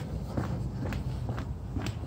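Footsteps of a person walking quickly on an asphalt road, heard as faint irregular steps over a low rumble.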